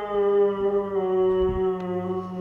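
One person's long, drawn-out vocal 'boooo', held on a single note that slowly sinks in pitch: booing a joke that fell flat.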